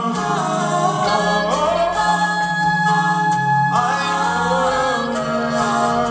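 A cappella vocal ensemble of mixed male and female voices singing close harmony into microphones: low voices hold long notes under upper lines that slide up in pitch twice.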